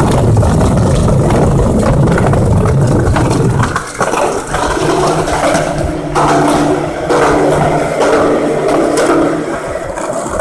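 Skateboard wheels rolling over rough concrete with a continuous grinding rumble. About four seconds in the rumble thins and turns to a steadier hum as the board rolls through a tunnel.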